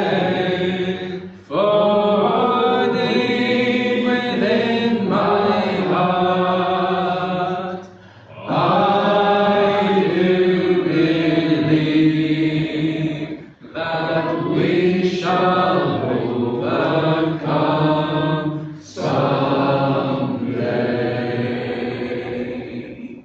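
Unaccompanied voices singing a slow gospel song in long, held phrases, with short breaks for breath between lines. The last phrase tails off near the end.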